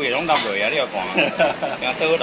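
Dishes and metal utensils clinking in a noodle-stall kitchen, with a voice talking or singing behind.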